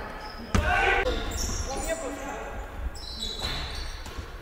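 Basketball play on a wooden gym floor: a sharp bang about half a second in, the ball bouncing, short high squeaks of shoes on the floor, and players' voices.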